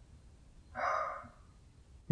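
A short, soft breath drawn in by a man pausing mid-sentence, about a second in, against quiet room tone.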